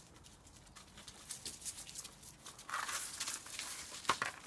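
Border collie puppies scuffling and play-fighting in dry leaves on paving: a run of crackles and rustles from paws and leaves, getting busier and louder about three seconds in.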